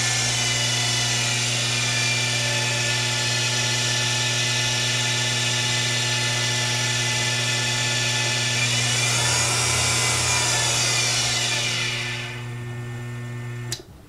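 Small benchtop lathe's electric motor and spindle running with a steady, high whine, driven by a new polyurethane round-cord belt. The lathe is switched off about 12 seconds in and the sound falls away.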